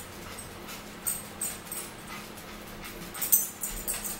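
A dog whining in short high cries: a few about a second in, and a louder cluster a little after three seconds.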